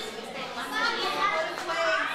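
Children's voices chattering and calling out, several at once.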